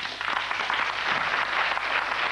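Studio audience applauding: steady clapping of many hands.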